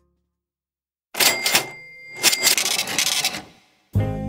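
Cash register sound effect: after a second of silence, a mechanical clatter with a ringing bell tone, fading out after about two and a half seconds.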